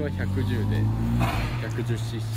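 A motorcycle engine idling steadily under conversation, with a brief hiss a little over a second in.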